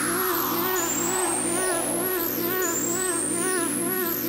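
Instrumental stretch of a house dub remix: a looping synth pattern with a high rising sweep about every two seconds, and a falling noise sweep that fades out about a second and a half in.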